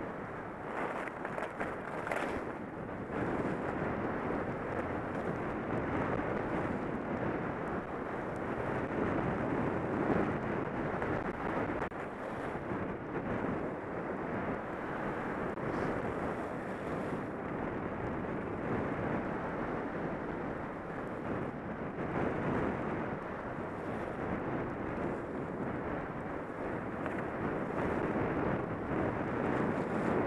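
Wind buffeting a helmet-mounted camera's microphone during a run down a powder-covered ski trail, mixed with the steady hiss of sliding through fresh snow; the rushing noise swells and eases with the turns.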